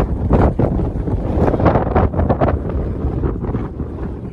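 Wind buffeting the camera's microphone in loud, uneven gusts.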